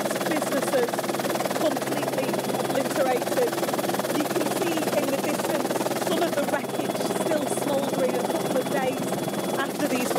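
A voice talking throughout over the steady drone of a helicopter in flight, heard from inside the cabin.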